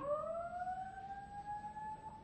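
Alarm siren sounding through the hall: one long tone that rises in pitch and levels off, then fades near the end.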